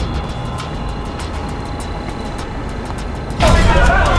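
Steady low rumble of a moving car heard from inside the cabin. About three and a half seconds in it gives way to a sudden, louder burst of several voices shouting outdoors.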